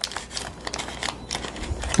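Paper wrapper of a block of cream cheese crinkling as it is opened and handled: a run of soft, irregular crackles and ticks.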